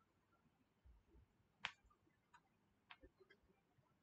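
Near silence with a few faint, sharp clicks, the clearest about one and a half seconds in and three more spaced over the following two seconds.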